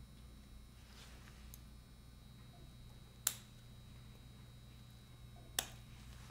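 Two sharp snips about two seconds apart as scissors cut through the surgical staple line of a lung specimen, over faint room tone.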